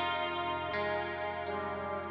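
Alternative rock passage without vocals: effects-laden electric guitar chords ringing and sustaining over a steady low note, with a new chord struck a little under a second in.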